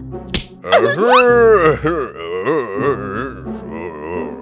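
Cartoon sound effects and music: a sharp slap-like hit about a third of a second in, then a loud rising sliding tone, followed by wavering, warbling notes.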